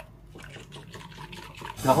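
Milk poured in a thin stream into a bowl of beaten egg yolks while a silicone whisk stirs it: a faint liquid trickle and swishing.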